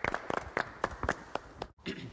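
A small group clapping in applause just after a song ends, the claps irregular and uneven. The sound cuts off abruptly near the end.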